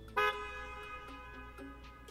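A car horn gives a short, loud toot just after the start, followed by softer held music.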